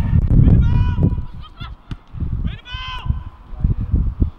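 Several short, high calls, each rising and falling in pitch, over a low rumble that is loudest in the first second.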